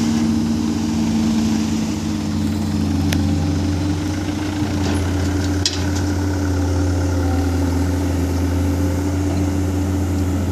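A light dump truck's diesel engine runs steadily at a low, even pitch while the bed is raised to tip out its load of earth. There is a brief knock about three seconds in and an abrupt break a little past halfway.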